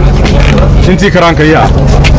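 A man speaking into a cluster of press microphones, over a steady low hum and rumble.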